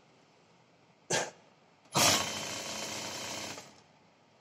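Juki industrial lockstitch sewing machine stitching cloth: a short burst of stitching a little after one second, then a steady run of about a second and a half that starts loud and stops shortly before the end.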